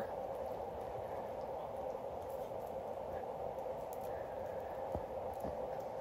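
A steady low background hum, with faint small clicks of metal jewelry being handled; one click, about five seconds in, is a little clearer.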